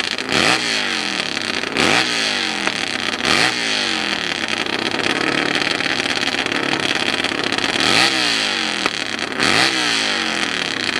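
Stationary hillclimb motorcycle's engine revved in repeated blips, each rising quickly and falling back, about every second and a half, with a longer steady rev in the middle.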